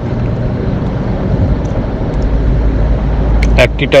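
Steady background noise with a low hum and no clear events. A few sharp clicks come just before a man's voice starts at the very end.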